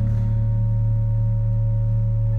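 Organ holding a single low sustained note, with a couple of faint steady upper tones above it. The fuller chord has just been released, leaving a bare, unchanging drone.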